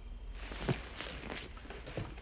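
Rustling and short knocks of a person moving about on a leather sofa, with one louder thump just under a second in.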